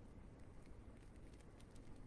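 Near silence: room tone with a few faint, light ticks of hands handling the craft leaves and wire.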